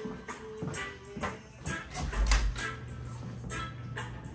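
Marching band music: drum hits and pitched band tones, with a loud low boom about two seconds in followed by a held low note.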